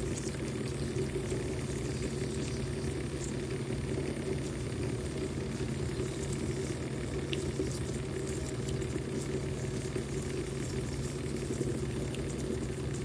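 Two small battery-powered motors spinning under water, giving a steady hum along with the churning of two swirling whirlpools.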